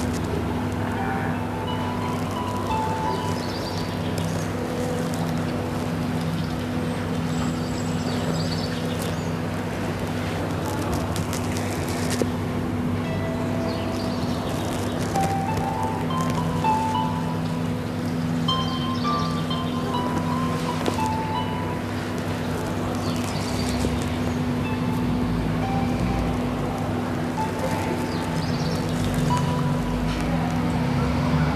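Soft ambient background music: a sustained low drone with scattered, gently struck bell-like chime notes.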